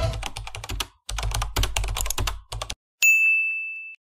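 Channel-intro sound effects: a quick run of keyboard typing clicks for about two and a half seconds, then a single bell ding about three seconds in that rings out for nearly a second.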